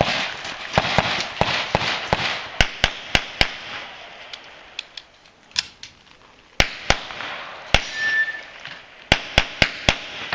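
Pistol shots fired rapidly, mostly in quick pairs about a third of a second apart, with a quieter pause of a couple of seconds near the middle. The shooter is firing on the move through a practical-shooting course of fire.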